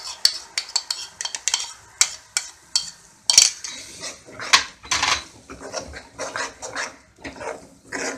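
A metal spoon clinks and scrapes against a ceramic bowl in quick strokes as tomato paste is scraped into a kadhai. A metal ladle then scrapes and stirs the paste around the pan in longer strokes.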